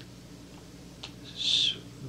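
A pause in a man's speech on an old interview recording: a steady low hum, a small mouth click about a second in, then a short breathy hiss as he draws breath before going on.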